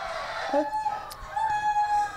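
A person's high, drawn-out vocal cry held at one steady pitch, heard briefly about half a second in and again, longer, from about a second and a half.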